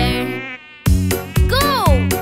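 Cartoon mosquito buzzing sound effect over a children's song: a wavering buzz that dips briefly about half a second in, then returns and swoops up and down in pitch near the end, with the song's steady beat underneath.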